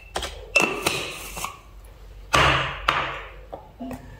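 A spoon and a glass jar of seasoning granules being handled: a few light clicks and clinks, then a louder scrape about two and a half seconds in.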